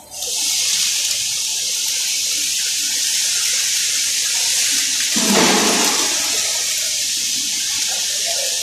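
Steady, loud hiss and sizzle of electric arc welding on steel beams, with a brief lower rush about five seconds in.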